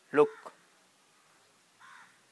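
A crow cawing faintly once near the end, after a man speaks a single short word; otherwise the room is nearly quiet.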